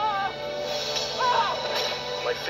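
Animated-film trailer soundtrack: music with wavering, high vocal cries twice, played through a portable DVD player's small speaker.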